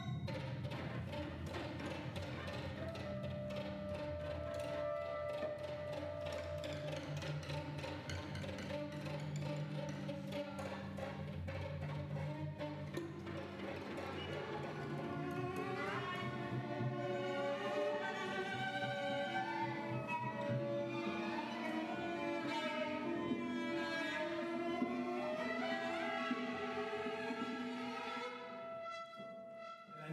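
Contemporary chamber ensemble playing, led by bowed strings: held notes over low sustained tones, then from about 14 s many sliding, wavering string lines that pile up into a dense texture, thinning out near the end.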